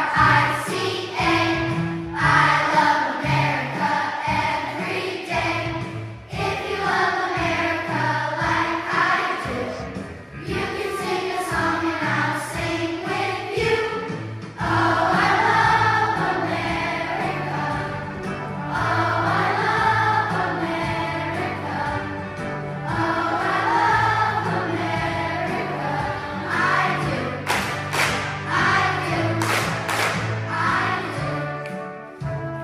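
A children's choir singing a song together over an instrumental accompaniment track.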